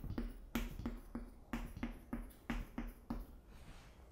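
Chalk tapping on a chalkboard as dots are marked one after another: about a dozen short, sharp taps, roughly three a second.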